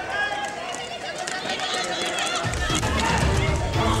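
Voices shouting and calling, with no clear words, over background music whose low beat drops out and comes back about two and a half seconds in.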